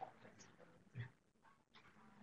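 Near silence: room tone, with one faint short sound about a second in.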